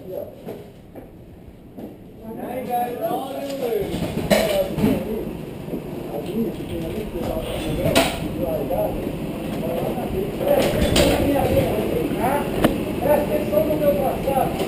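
Go-kart engines running as the karts start to roll out of the pit lane, building up about four seconds in, with indistinct voices over them. A few sharp knocks stand out.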